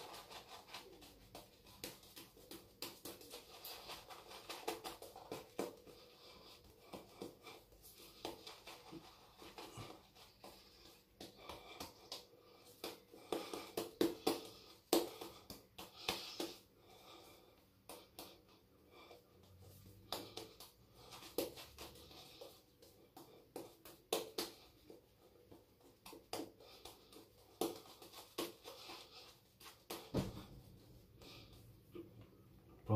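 GF Trumper SB5 shaving brush working Martin de Candre Vetyver soap lather onto the face. Wet bristles swish and squelch in quick, irregular strokes, with a louder flurry around the middle.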